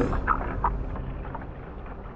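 Low rumble of wind and water on a camera held just above the sea surface, with a few faint splashes, fading steadily away.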